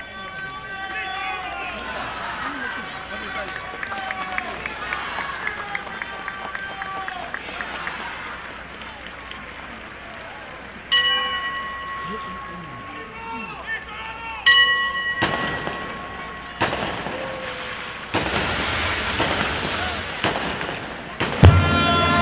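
A crowd singing a hymn, then two sudden loud strikes about three and a half seconds apart, each ringing on at a steady pitch as it fades. Several sharp bangs and a long crackling hiss follow, like fireworks set off as the procession arrives.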